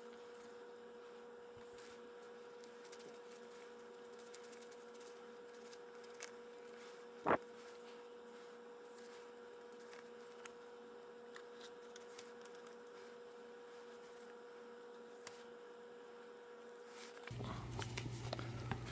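Faint steady electrical hum with a few soft ticks, and one brief, much louder blip about seven seconds in. A fuller rustling sound comes in just before the end.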